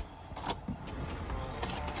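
Idling car and traffic rumble heard from inside the cabin, with a few short sharp sounds, the loudest about half a second in, as the windscreen is washed by hand from outside.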